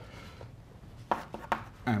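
Chalk writing on a blackboard: a few sharp taps and short scrapes in the second half, over faint room noise.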